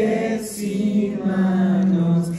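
A male singer holding long, drawn-out notes, with a change of pitch about half a second in and again past a second, in a live solo performance.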